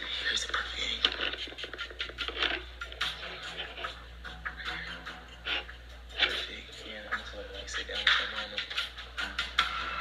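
Handling noise from a handheld camera being carried and set up: frequent small clicks, knocks and rustles, over a steady low hum and faint muffled voices.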